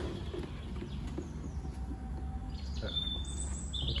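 A few short, faint, high bird chirps in the second half, over a steady low hum.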